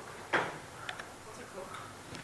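A few faint clicks from a laptop being operated, a quick pair about a second in, after a brief voice sound near the start.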